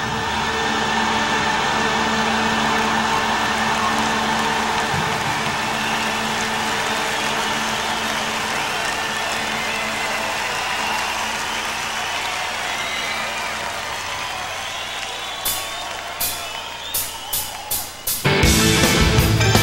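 Stadium crowd cheering between songs, slowly dying down over a low steady hum. Near the end, a quick run of sharp drum hits leads into the next song.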